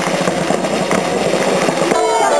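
Drums and hand percussion of a marching folk group: a dense, irregular clatter of beats with no melody.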